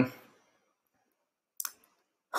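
The tail of a spoken 'um' fades out, then a quiet pause broken by two quick, short clicks about a second and a half in.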